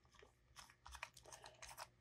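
Near silence, with a few faint ticks and clicks from the threaded cartridge holder of a refillable insulin pen being screwed back onto the pen body.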